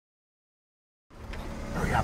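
Silence for about a second, then a car engine running, heard from inside the cabin as a steady low hum. Near the end a man's voice starts saying "hurry up".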